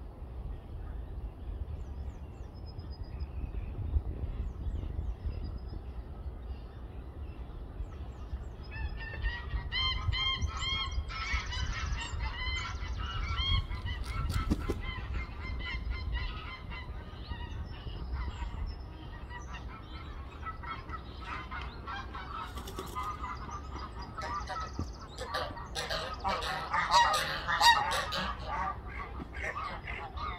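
Greylag geese honking: a run of repeated calls starting about a third of the way in, then a louder bout of honks near the end.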